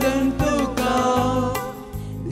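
A devotional adoration hymn in Konkani: a singer's held, wavering notes over steady keyboard accompaniment, with a brief dip in loudness near the end before the music carries on.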